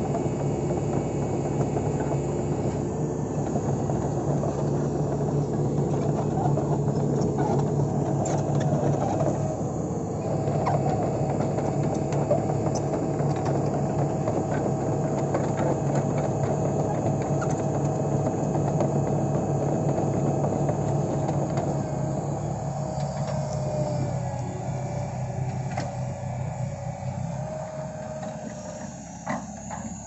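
Hitachi 110MF tracked excavator's diesel engine running while the machine is operated, a steady drone with a higher whine over it that shifts in pitch. The sound fades somewhat over the last few seconds.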